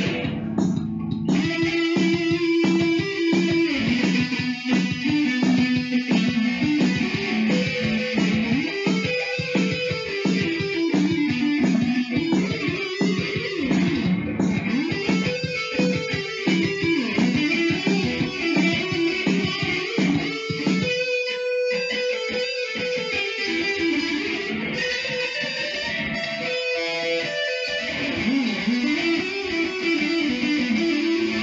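Electric guitar playing an instrumental break of single-note melodic lines that run up and down, with quick picking and a brief thinning about three-quarters of the way through.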